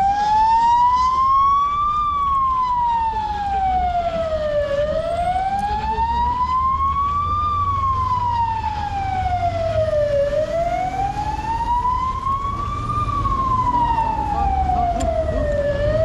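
A siren wailing, its single tone rising slowly and falling again about every five and a half seconds, with three peaks, over a low steady rumble.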